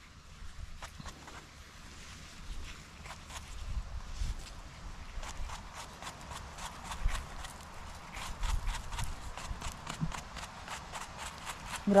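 A small bristle brush scraping soil off a porcini mushroom's stem in quick scratchy strokes, sparse at first and coming several a second from a few seconds in. Wind rumbles low on the microphone underneath.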